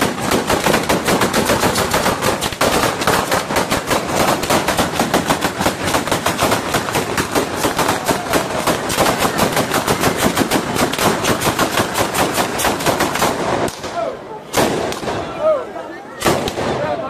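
Batteria alla bolognese: a long chain of firecrackers strung along wires going off in a rapid, unbroken run of bangs, many a second. It stops about fourteen seconds in, followed shortly by one more single loud bang.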